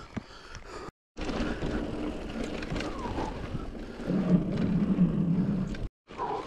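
Mountain bike rolling along a dirt and gravel trail: tyre noise and the rattle of the bike, with wind on the microphone. A low buzzing drone joins in for the last couple of seconds. The sound drops out completely for a moment about a second in.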